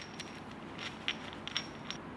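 Faint, scattered light clicks of a steel nut and a broken bolt piece knocking together as they are handled in gloved hands, over a faint steady high whine.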